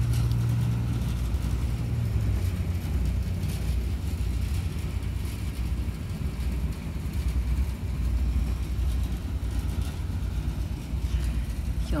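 A low, steady rumble with a slightly wavering level and no clear strokes or tones.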